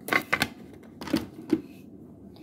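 A few short clicks and rustles of close handling as hands gather hair and work a hair tie near the microphone.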